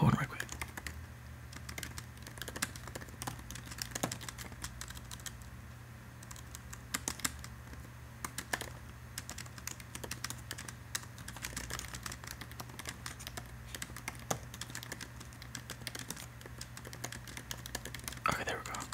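Typing on an Apple MacBook's laptop keyboard: irregular runs of light key clicks with short pauses between them, over a low steady hum.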